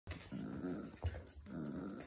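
Dog growling in play while tugging on a rope toy: two growls of about half a second each, with a short knock about a second in.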